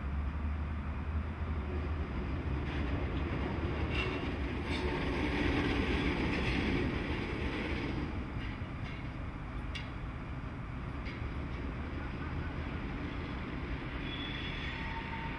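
Vossloh G1206 diesel-hydraulic locomotive rolling slowly past, its diesel engine giving a steady low hum that swells to its loudest about halfway through, with a few sharp clicks from the wheels on the track.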